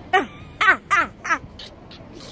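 A woman laughing in four short, high, falling bursts, close to the microphone.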